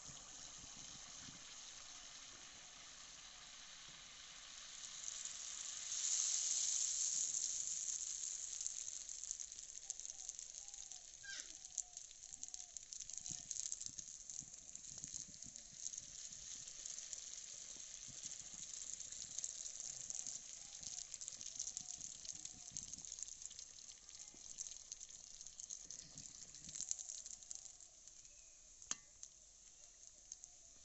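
Malpua batter deep-frying in hot oil in an iron kadai: a steady sizzle with crackling and bubbling that swells loudest about six seconds in, then settles.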